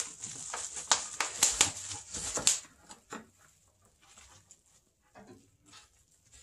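Clear plastic packaging crinkling and rustling as camshafts are handled in their box, with several sharp clicks. After about two and a half seconds it dies down to a few faint taps.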